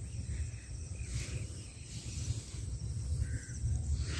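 Soft scratching of a hand pressing and smoothing loose sandy soil to bury freshly sown carrot seed, over a steady low outdoor rumble and faint insect chirping.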